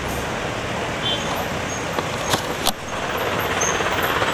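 Ashok Leyland prison bus running as it pulls slowly in, over steady road-traffic noise. Two sharp clicks come a little past the middle, about half a second apart.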